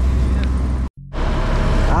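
Fishing boat's engine running with a steady low drone under wind and sea noise. The sound cuts out abruptly for a moment about a second in, then comes back with the drone much weaker.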